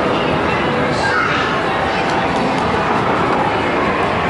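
Steady background din of a busy indoor game room, with indistinct voices mixed into it.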